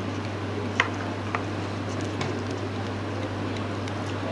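Steady low hum of room background, with a few faint light clicks about a second in from hands wrapping latex thread around a frozen fish bait.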